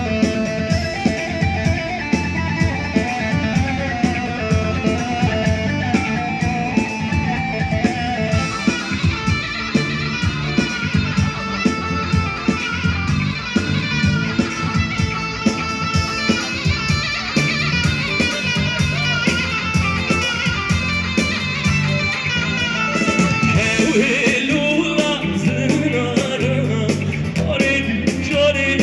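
Amplified live music for a Kurdish giranî circle dance: a plucked-string melody over a steady beat, with singing coming in toward the end.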